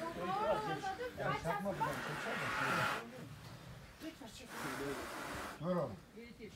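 A young bull breathing hard while men hold it down: two long rushing breaths about a second each, with men's voices calling over the struggle.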